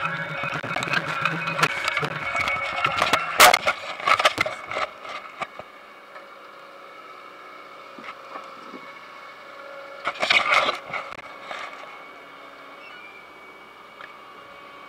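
Potato harvester running, with potatoes knocking and clattering together as they are sorted and drop into the bin: busy clatter for the first five seconds or so, then a quieter steady running sound with another short burst of knocking about ten seconds in.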